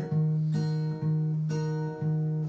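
Acoustic guitar strumming a D-sharp minor chord, the third chord of the key of B major. It is struck twice about a second apart and left to ring between strokes.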